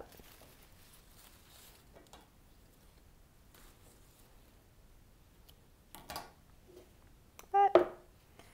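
Faint rustling of leaves and a few light snips as stems are cut from a potted poinsettia, with a brief loud vocal sound near the end.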